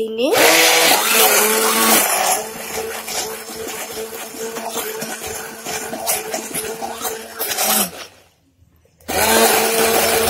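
Electric hand blender running in cake batter in a steel bowl, a steady motor whine that is louder for the first two seconds. It stops about eight seconds in and starts again a second later.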